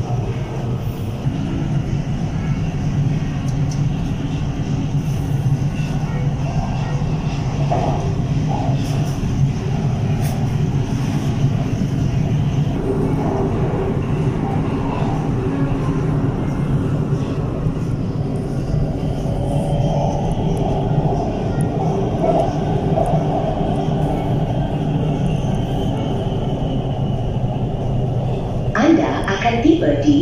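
MRT electric metro train running along an elevated track, heard from inside the car: a steady rumble with a motor hum, joined by a higher whine about two-thirds of the way through.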